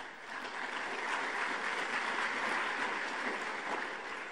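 Large audience applauding in a hall, swelling in over the first second and easing off near the end.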